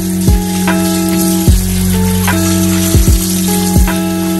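Kitchen tap water running onto raw chicken pieces in a colander, a steady hiss, under background music with sustained notes and a thudding beat.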